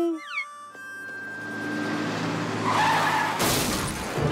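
Cartoon sound effect of a vehicle rumbling in and growing steadily louder, then skidding with a tyre squeal near the end of the run-up to a crash.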